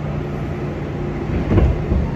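New York City subway train running, heard from inside the car: a steady low rumble and hum, with a sudden thump about one and a half seconds in.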